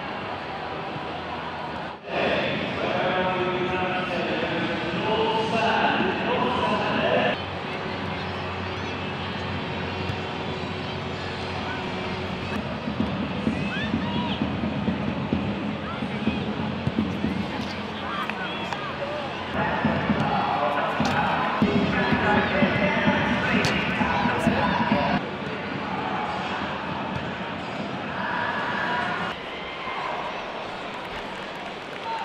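Pitch-side sound of a football team's warm-up: voices calling and chattering, with occasional sharp thuds of balls being kicked. The sound changes abruptly several times as the clips cut.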